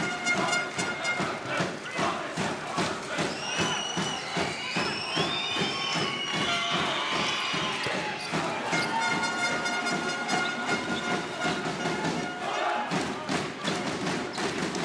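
Basketball arena sound during live play: crowd noise with many short thumps throughout, held steady tones for a few seconds near the middle-to-end, and gliding pitched sounds, like voices chanting, in the first half.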